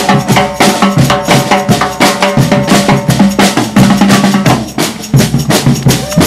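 Percussion group playing a fast Cuban rhythm on stainless-steel drums struck with sticks, with sharp, rapid metallic hits and ringing tones over a steady low drum pulse.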